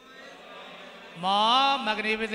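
A man's voice, after a quiet pause, breaking in about halfway through with a long drawn-out syllable in a sing-song, chant-like tone, then going on in short syllables.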